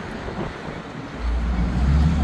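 Street traffic noise on a city road, with a deep low rumble that swells in about a second in, typical of a heavy vehicle passing close by.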